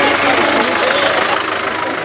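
A steady engine-like running noise under voices, coming in suddenly at the start.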